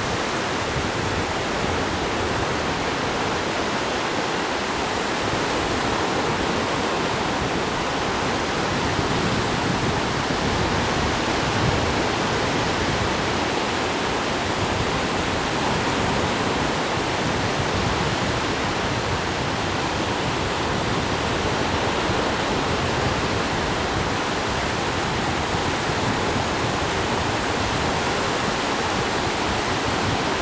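Ocean surf breaking along the beach, a steady, even rush of noise with no single wave standing out.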